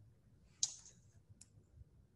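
Two faint clicks about three quarters of a second apart, over quiet room tone.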